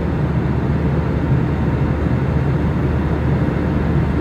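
Jet airliner cabin noise heard from a passenger seat: a steady low rumble with hiss above from the engines and the air rushing past.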